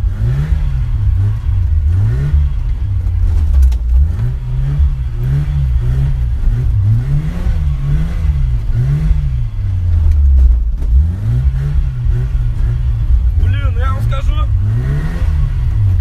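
Ford Sierra's 2.0-litre OHC fuel-injected four-cylinder engine revving up and down over and over as the car is thrown into slides. It is heard from inside the cabin.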